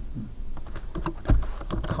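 Computer keyboard keystrokes: a handful of separate key presses, mostly in the second half, with one heavier thump about a second and a quarter in.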